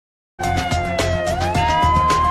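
News-channel intro music with drum hits, starting after a brief silence, and a siren-like synth tone that dips and then rises to a held pitch.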